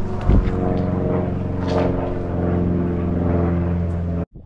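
A motor engine running steadily with a deep, even hum. There is a brief low thump about a third of a second in.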